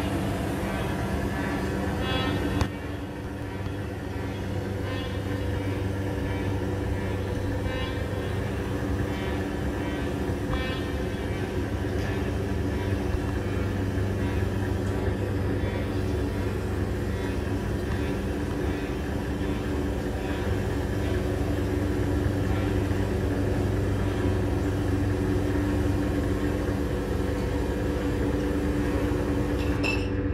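Live electronic drone music played loud: a dense, sustained drone of steady low tones over a rumbling noise bed. The sound dips briefly a little over two seconds in, then carries on.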